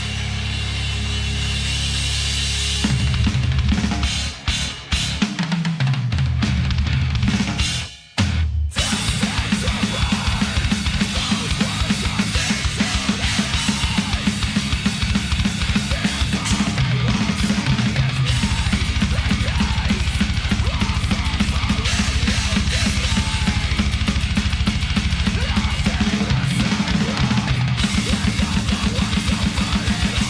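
Heavy metal track with a prominent drum kit, played through a drum playthrough video. It opens on a held low chord, drops out briefly about eight seconds in, then runs into a fast, steady drum beat with rapid bass drum strokes under snare and cymbals.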